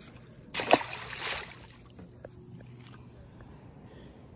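A splash at the surface of the pond water about half a second in, lasting about a second, as a released largemouth bass goes back into the water.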